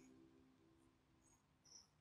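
Near silence: the last of quiet background music fades out, followed by a few faint, short, high-pitched chirps.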